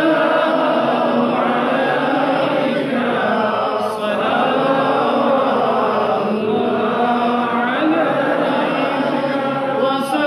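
A congregation of men chanting together in unison, in long held notes that rise and fall slowly.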